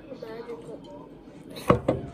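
Two sharp knocks in quick succession near the end: a hot sauce bottle being set down hard on the table. A faint voice can be heard before them.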